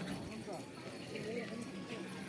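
Crowd babble: many people talking at once, no single voice standing out.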